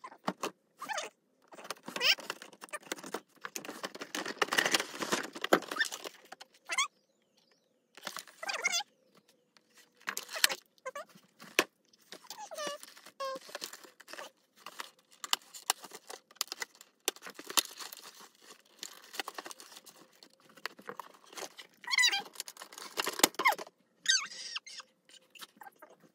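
Toy packaging being opened by hand: cardboard and plastic crinkling, rustling and tearing in stop-start bursts with short gaps between them.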